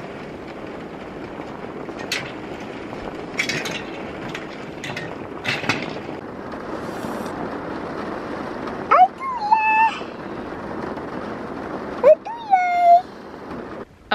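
Steady rain falling onto a wooden deck and the ground, with a few sharper taps of drops. Near the end, two short pitched calls rise and then hold, about three seconds apart.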